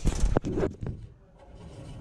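Handling noise from a camera being moved: rubbing with a few sharp knocks in the first second, then a quiet stretch with only a low rumble.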